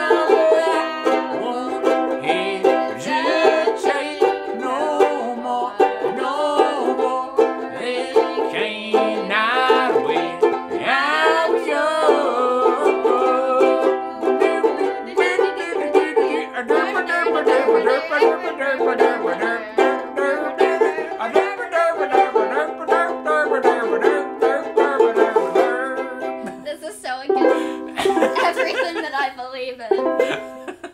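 Two Vangoa banjo ukuleles strummed together in a bright, twangy rhythm, with a man's voice singing over them.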